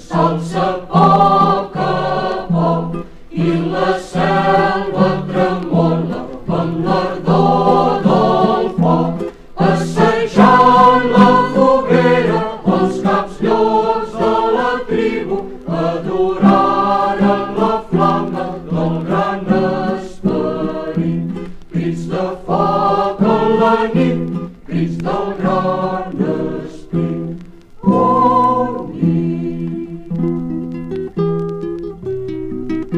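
A group of voices singing a Catalan folk song together, with acoustic guitar strummed in a steady rhythm underneath.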